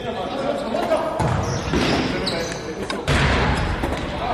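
Echoing voices of players calling out in a large sports hall, with a football thudding on the hard indoor floor. About three seconds in comes a sudden loud impact.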